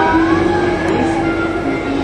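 Steady rolling rumble of a dark-ride vehicle moving through the show building, with steady sustained tones over it.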